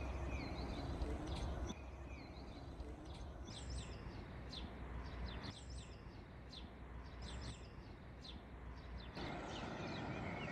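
Small birds chirping, short falling calls repeated many times, mostly in the middle stretch, over a steady low outdoor hum whose level jumps at several edits between short shots.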